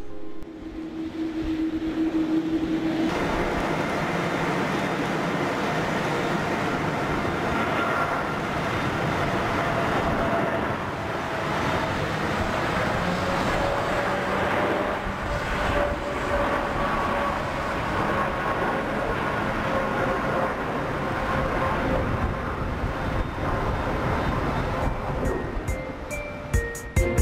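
Boeing 787 jet engines during takeoff. A steady engine tone for the first few seconds, then a continuous rush of takeoff thrust through the takeoff roll and climb-out.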